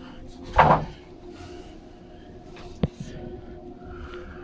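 A short, loud knock-like bump with a scraping edge, then a single sharp click about two seconds later. These are the sounds of something being handled against the cabin's wooden furniture, over a steady low hum.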